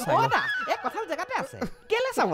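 A man laughing and giggling in short, broken bursts, his voice sliding up and down in pitch.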